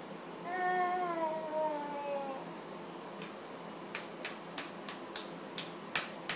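A toddler's drawn-out, high-pitched vocal 'aah' lasting about two seconds, sliding slightly down in pitch. It is followed by a run of light clicks, about three a second, in the last few seconds.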